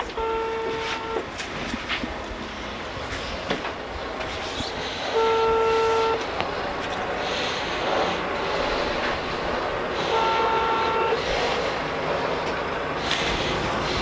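Ringback tone from a mobile phone on speaker: three long steady beeps about five seconds apart, the call ringing without being answered.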